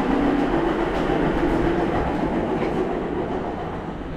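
Loud steady mechanical roar with a low hum running through it, easing slightly toward the end.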